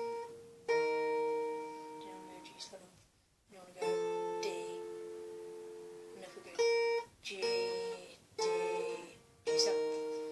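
Acoustic guitar finger-picked slowly: single plucked notes and small chords, each left to ring and fade before the next, with a short pause about three seconds in.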